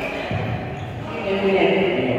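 Sounds of badminton play in a large sports hall: thuds of players' feet on the court floor, with a voice calling out in the second half.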